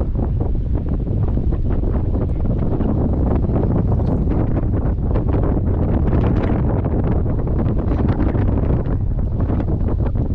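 Wind buffeting the microphone: a loud, steady low rumble with frequent crackles.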